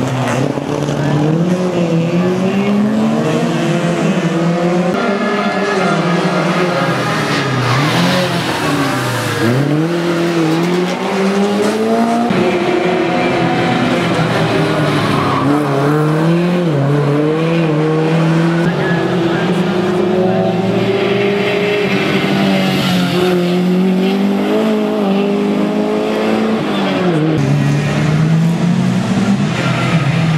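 Historic rally car engines revving hard, the pitch climbing and dropping again and again through gear changes and corners, with some tyre squeal.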